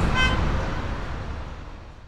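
Vehicle traffic noise with a short horn toot just after the start, fading out steadily.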